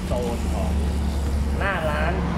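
A steady low rumble of motor vehicles, with a man's voice heard briefly twice, once just after the start and again near the end.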